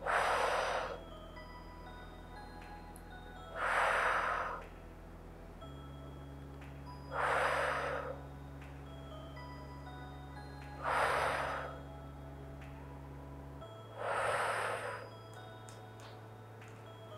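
A woman blowing out forcefully through pursed lips in a yoga breathing exercise: five long exhalations, each about a second long and about three and a half seconds apart. Soft sustained background music plays underneath.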